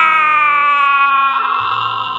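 A man's long, drawn-out cry of 'waaah', held on one breath with its pitch sliding slowly downward and fading, over steady background music.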